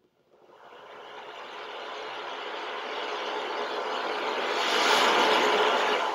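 Recorded ocean waves played through an Amazon Echo Dot's small speaker: a steady rush of surf that swells gradually louder over several seconds.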